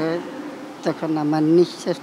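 A man's voice speaking in short, broken phrases.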